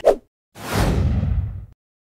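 A whoosh sound effect lasting about a second, its hiss sweeping downward in pitch and cutting off suddenly.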